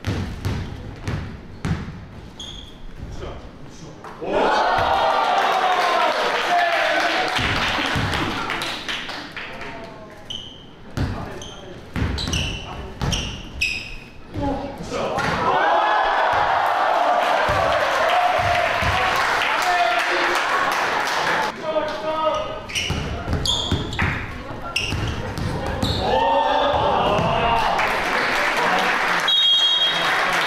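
A basketball dribbled on a hardwood gym court, followed by three loud bursts of a crowd cheering and shouting after baskets, beginning about four seconds in, about fifteen seconds in and near the end.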